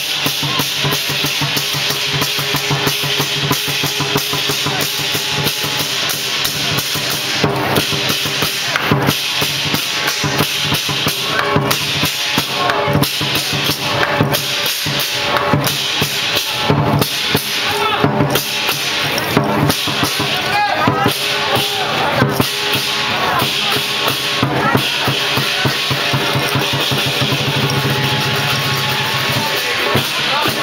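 Chinese lion dance drum beating a fast, continuous rhythm with clashing cymbals, with heavier accented strokes every second or two.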